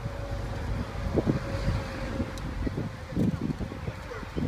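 Wind buffeting the phone's microphone in irregular gusts, over a low steady rumble of road vehicles.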